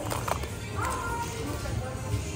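Hard plastic press-on nail cases knocking and clacking together as a hand rummages through a bin of them, with a few sharp clicks at the start.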